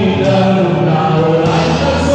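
A man singing a worship song into a microphone, amplified through a church PA, in long held notes that step from pitch to pitch.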